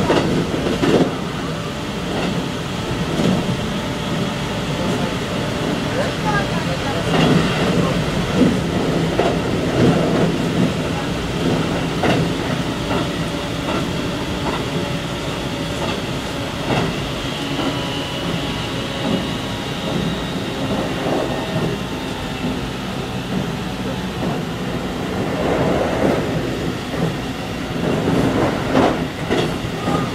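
Keikyu electric train running at speed, heard from inside the rear cab: a steady running hum with irregular clicks of the wheels over rail joints and points.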